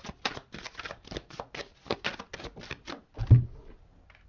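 Tarot cards shuffled by hand: a quick, even run of card snaps, about six a second, then a single loud low thump a little over three seconds in.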